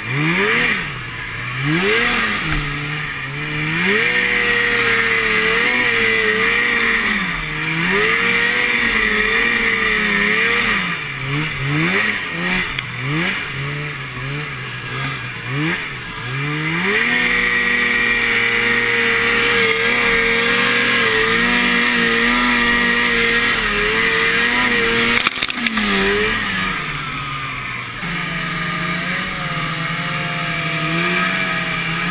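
Two-stroke snowmobile engine working through deep snow, its revs rising and falling repeatedly for the first half, then held steady at high revs for several seconds before dropping back near the end.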